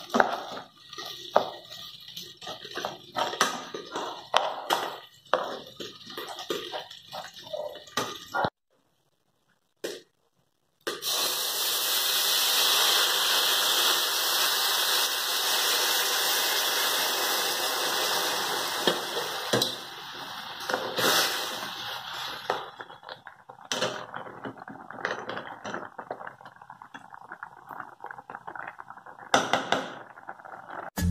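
Plastic spoon stirring and scraping rice as it fries in oil in a metal pot. After a short silent gap, water poured onto the hot rice makes a loud, steady rushing hiss for about ten seconds, then it settles into a softer crackling as the water heats.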